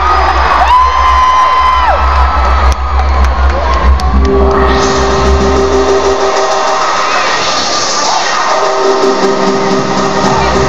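Loud electronic dance music over a concert PA with a heavy bass beat, and a crowd cheering. The bass cuts out about six seconds in under a rising sweep and comes back near the end.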